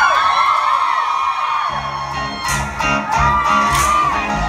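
Live pop-rock band playing an instrumental passage between sung lines, led by electric guitar, with bass and drums coming in heavily about two seconds in.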